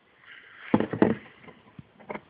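A few short metal clicks as a bearing shell is pushed into place in a connecting rod end cap, with a breath through the nose around them.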